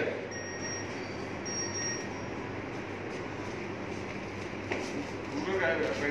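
Steady background noise of a factory hall, with faint high metallic ringing twice in the first two seconds. A man's voice starts near the end.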